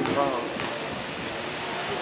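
Indoor basketball gym during play: a steady haze of room and crowd noise with indistinct voices, a short call at the start and a single sharp tap about half a second in.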